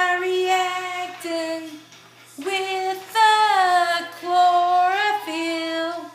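A woman singing, holding long drawn-out notes, with a short break about two seconds in before she sings on.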